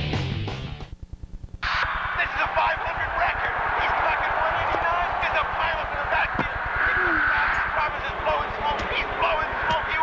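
Electric-guitar rock music fades out about a second in, leaving a low buzz for under a second. Then a television commercial's soundtrack starts, with indistinct voices over a busy background noise.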